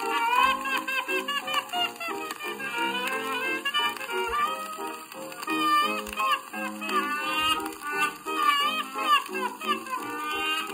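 A 1928 popular-song record playing a stretch without sung words: a high, wavering melody line over the band's steady accompaniment.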